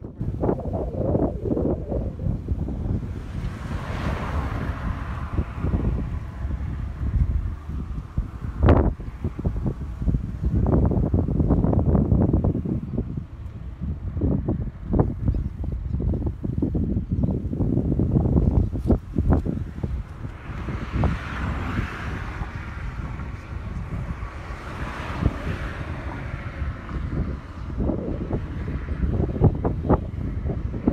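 Wind buffeting the microphone, a heavy rumble with irregular gusts. Two louder rushing swells come through, one about four seconds in and a longer one between about twenty and twenty-seven seconds.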